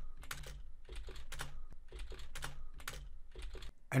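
Typing on a computer keyboard: a quick, irregular run of key clicks over a faint low hum.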